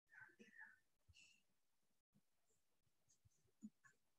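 Near silence: room tone over a video-call connection, with faint whispered voice fragments in the first second and a soft tick near the end.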